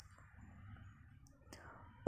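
Near silence: faint room tone with a few soft clicks, the clearest about one and a half seconds in.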